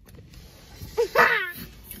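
A young child's brief high-pitched vocal exclamation about a second in: a short yelp, then a longer cry that falls in pitch.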